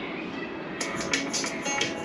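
Music from the Quiver augmented-reality app starts playing through an iPad's speaker about a second in, a tune of short, evenly repeated notes that comes on as the scanned colouring page turns into a 3D animation.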